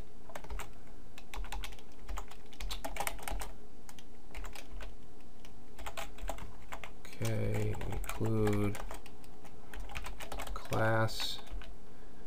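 Computer keyboard typing: irregular runs of keystroke clicks with short pauses between them.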